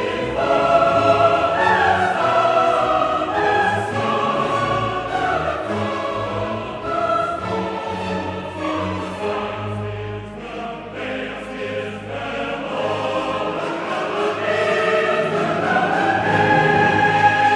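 Mixed four-part chorus singing with full symphony orchestra in a late-Romantic cantata, the voice parts entering one after another on the words "before the monarch's stalwart son". The music eases off around the middle and swells again near the end.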